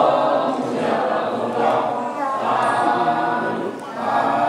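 Congregation chanting Buddhist prayers together, many voices reciting in unison.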